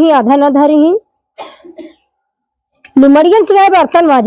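A woman's loud, drawn-out speech, breaking off after about a second and resuming about three seconds in. There is a brief, faint noisy sound in the pause between.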